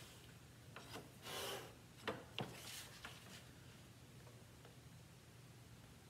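Mat cutter's cutting head drawn along its rail, the blade slicing through mat board: a short scraping rasp about a second in, then a couple of sharp clicks and a little more faint scraping.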